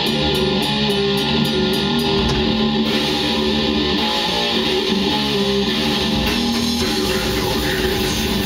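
A death metal band playing live: distorted electric guitar and bass riffing over a drum kit, loud and dense. The drums keep up an even beat of about four strokes a second for the first three seconds before the riff changes.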